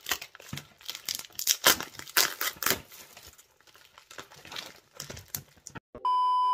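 Plastic bubble mailer crinkling and crackling as it is gripped and pulled at by hand in an attempt to tear it open. It is loudest in the first three seconds, then fainter and more scattered.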